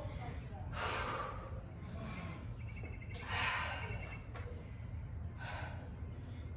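A woman breathing hard while she recovers during a rest interval between exercises: three long, audible breaths about two and a half seconds apart.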